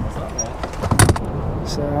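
Bow-mount electric trolling motor being lowered from its mount, with a sharp clunk about a second in as it drops into place.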